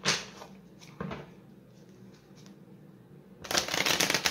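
A tarot deck being shuffled by hand, in short bursts: one at the start, another about a second in, then a longer, louder run of shuffling near the end.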